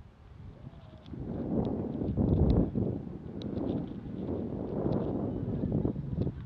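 Swells of rustling, handling noise, with a few faint clicks, as the landed RC helicopter is picked up and carried; the rotor is not running.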